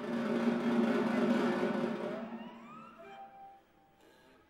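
Live contemporary ensemble music: a loud, dense sustained chord for about two seconds, then it thins out into rising sliding pitches and a lone held note that fades near the end.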